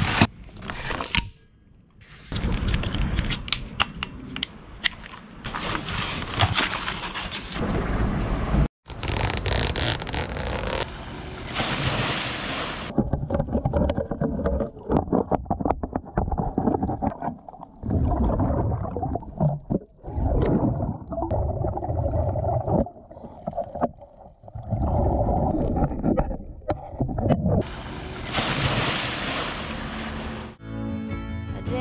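Scuba gear clattering and rustling as it is handled on deck. Then underwater sound: a diver's exhaled bubbles gurgling and rushing in repeated bursts, with brief knocks and scrapes at the hull as the fouled speed log and watermaker intake through-hulls are cleared.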